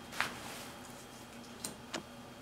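Magic: The Gathering trading cards being flicked through by hand, one card slid off the stack and tucked behind. There is a sharp snap of card stock about a quarter second in, then two lighter clicks near the end.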